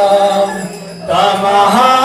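Voices chanting together in long held notes. The chant drops away briefly about half a second in and starts again about a second in.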